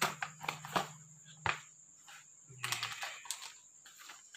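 A cardboard box being opened by hand: several sharp clicks and scrapes of the lid and packaging, then about a second of plastic bag crinkling as the bagged item inside is pulled out.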